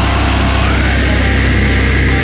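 Melodic death/thrash metal: distorted guitars and bass hold a sustained chord with no drum hits. About half a second in, a high note slides up and is held.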